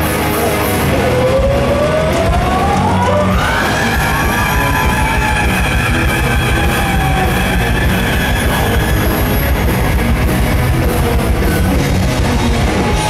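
Heavy metal band playing live: distorted electric guitars and drums, with a lead line that slides up in pitch about a second in and then holds long notes.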